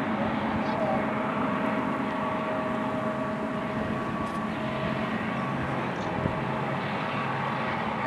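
Diesel-electric locomotives of a BNSF intermodal train running as the lead unit comes out of a tunnel mouth: a steady engine drone with a faint low hum.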